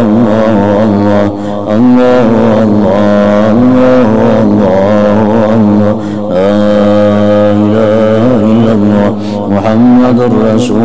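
Male Islamic devotional chanting: a slow, drawn-out melody sung on long held notes that turn slowly in pitch. There are short breaks between phrases about one and a half seconds in, around six seconds, and around nine seconds.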